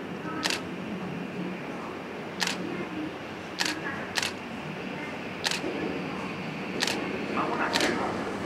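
Camera shutters clicking seven times at irregular intervals. Near the end the running noise of an approaching Tokyu 2020 series electric train rises beneath them.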